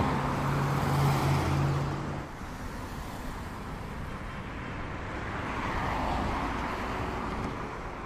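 Urban street traffic noise: a steady wash of passing cars, with a low engine hum in the first two seconds.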